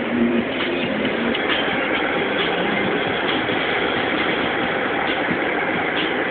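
Steady engine and tyre noise of a car driving on a freeway, with a low hum in the first second and a few faint clicks.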